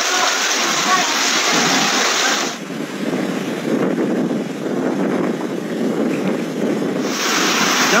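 Fast-flowing floodwater rushing, a steady hiss of moving water. About two and a half seconds in, a cut changes it to a duller, lower wash of storm waves surging over a seawall. The rushing floodwater returns about seven seconds in.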